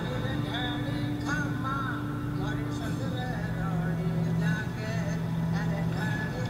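Slow film score: sustained low drone notes with a wavering high melody line over them.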